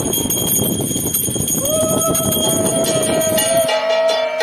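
Puja bell ringing amid clatter and voices. About one and a half seconds in, a long steady note starts and holds. Just before the end the sound cuts to music.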